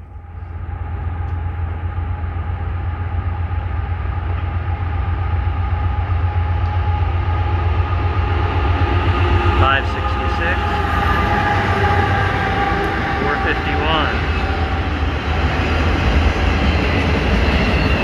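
A CSX freight led by two GE AC44CW diesel-electric locomotives approaches and passes, engines running with a deep, steady rumble and several held tones above it. The sound builds over the first couple of seconds, then stays loud as the locomotives go by and the loaded autorack cars follow, with a couple of brief high squeals along the way.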